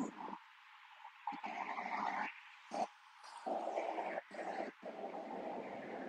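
Faint, hissing road traffic noise from a busy multi-lane highway below, cutting in and out in choppy stretches.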